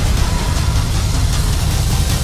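Loud, bass-heavy action trailer score mixed with the engine sound effects of futuristic hover cars in a chase.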